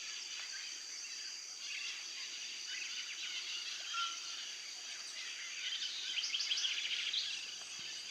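Amazon rainforest dawn chorus: many birds chirping and calling over a steady high-pitched drone of insects.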